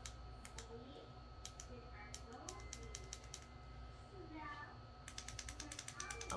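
Small plastic button clicks from a ring light's in-line control switch, pressed one at a time and then in a quick run of about ten a second near the end, as the light is cycled through its brightness and colour settings. A faint voice is heard in the background.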